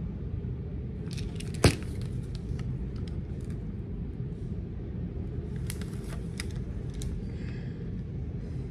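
A plastic prescription pill bottle handled against a paper pharmacy bag: a sharp click about one and a half seconds in, then a few smaller clicks and paper crinkles around six seconds, over a steady low hum.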